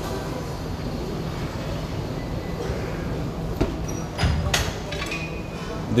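Gym workout ambience: a steady background hum, with a couple of dull thumps about three and a half and four and a half seconds in from athletes doing burpees and barbell work on rubber flooring.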